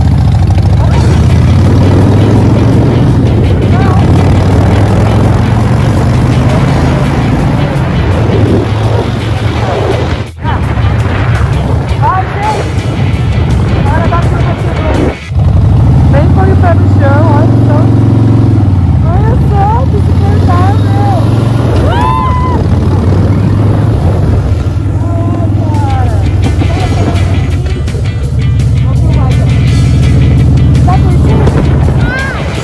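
Harley-Davidson V-twin motorcycle engine running under way with two up, its pitch rising and then falling once about halfway through, with background music laid over it.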